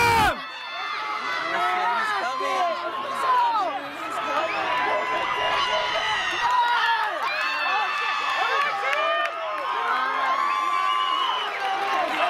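A crowd of spectators cheering and shouting encouragement to runners, many voices overlapping with some long held yells. It opens with a loud, close burst of noise.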